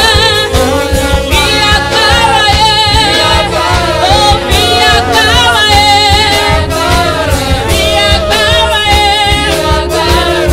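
A woman singing a gospel song through a microphone and PA, her voice wavering with vibrato, over live band accompaniment with a steady beat.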